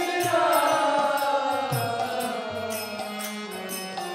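Kirtan: a group of voices chanting a devotional mantra together, the melody falling across the phrase, over a sustained keyboard-like drone, with a steady beat of bright metallic clicks and low drum strokes.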